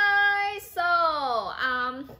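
A high voice singing out a drawn-out phrase: one note held steady for about half a second, then a longer note sliding down in pitch, and a short low note near the end.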